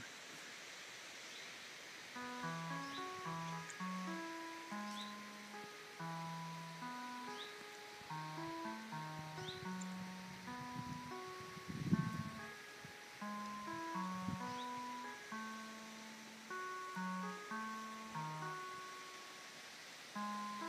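Music of the Plants device wired to a pine tree, playing through a small loudspeaker: a slow, wandering line of single synthesized notes that step between pitches, starting about two seconds in. The notes follow changes in the tree's electrical conductivity, picked up by electrodes on the tree. A brief noisy burst sounds about twelve seconds in.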